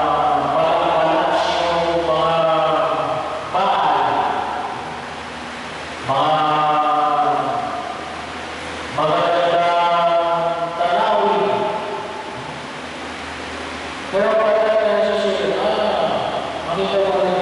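A priest chanting a liturgical prayer into a microphone, amplified over the church sound system, in sustained sung phrases of about two seconds separated by short pauses, with a steady low hum from the amplification underneath.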